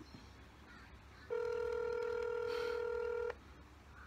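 Ringback tone of an outgoing phone call played over a smartphone's loudspeaker: one steady ring about two seconds long, starting a little over a second in, while the call waits to be answered.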